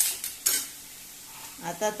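A steel ladle stirring clams in their shells in a metal pot: two sharp clatters of shell and spoon against the pan in the first half-second, then a faint sizzle.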